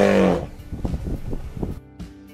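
An African elephant's loud bellowing call that ends about half a second in, followed by quieter scattered knocks and shuffling, with background music underneath.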